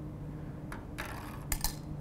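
Jelly beans dropping into a glass jar: a few faint, light clinks in the second half.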